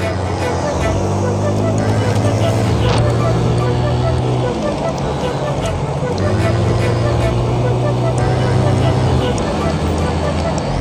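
Honda Click 125i scooter's single-cylinder engine running on the move. Its pitch drops about halfway through and climbs back up a second or so later, as the throttle eases off and opens again.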